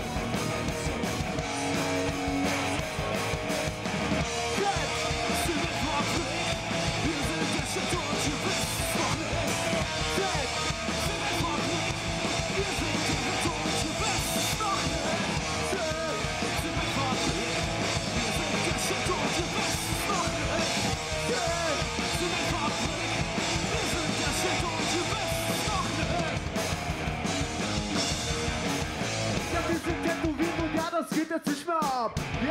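A live indie rock-rap band playing loud and steady, with distorted electric guitars, bass and drums. A vocalist raps into the microphone over it in the later part.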